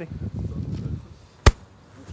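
A single sharp knock about one and a half seconds in, after about a second of low rumbling noise.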